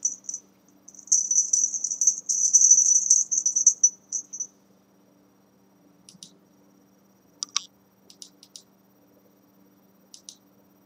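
A feather wand cat toy being shaken and dangled: rapid, high-pitched rattling clicks for a few seconds, then a few separate clicks later on.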